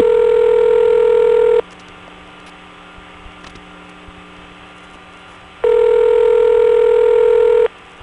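Telephone ringback tone heard by the caller over a phone line: two rings about four seconds apart, with line hiss in between, before the answering machine picks up.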